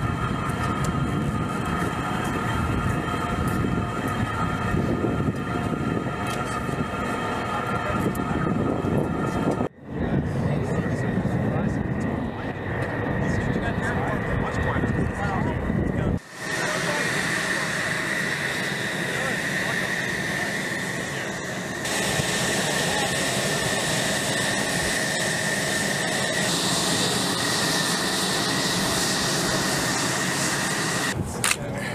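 F-35's Pratt & Whitney F135 jet engine running on the ground: a steady high whine over a rushing hiss. The sound drops out briefly and changes twice, about ten and sixteen seconds in; after that the whine is higher and sharper and the hiss is louder.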